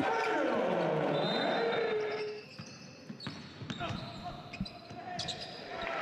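Basketball bouncing on a hardwood court during live play, with faint players' voices in a large, nearly empty arena hall.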